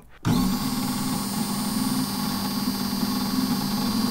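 Mahlkönig X54 espresso grinder's motor switching on about a quarter-second in and running steadily, a low hum under a thin high whine, while its grind setting is turned finer towards the point where the burrs touch.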